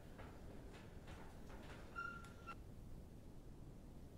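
Near silence: faint room tone, with one short, steady high-pitched tone about two seconds in.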